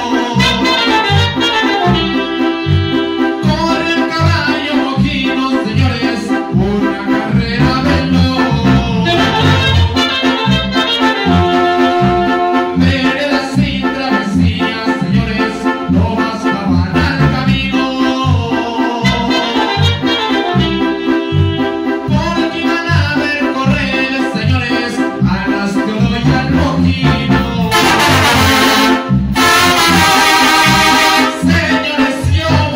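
Small live band playing an instrumental Latin dance tune: trombones, saxophone, keyboard and drum kit over a steady bouncing bass beat. The horns come in louder near the end.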